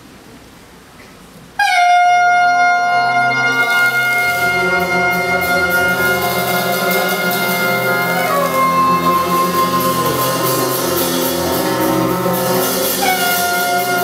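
Jazz quintet starting a piece about a second and a half in: tenor and soprano saxophones hold long notes together over piano, double bass and cymbals. The horns move to new notes about eight seconds in and again near the end.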